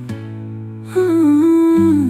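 Music: acoustic guitar notes ringing, with a wordless humming vocal line that comes in about a second in.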